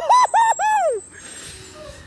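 A man whooping "woo" in a high falsetto: three quick whoops and a longer one that falls away, ending about a second in.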